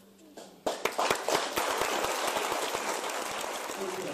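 Concert audience applauding: after a short hush at the end of a song, the clapping breaks out suddenly less than a second in and goes on as a steady, dense patter.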